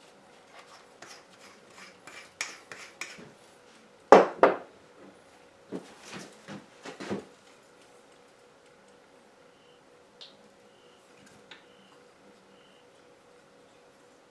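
A metal drill chuck wiped with a cloth and handled, giving a run of small clicks and rubbing, then a loud knock about four seconds in and a few lighter knocks after it. The rest is quiet room tone.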